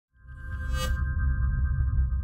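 Electronic logo sting: a deep pulsing bass under a held chord of pinging high tones, fading in from silence, with a brief bright shimmer just under a second in.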